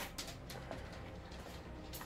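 Quiet room tone with a faint steady low hum and no clear sound event.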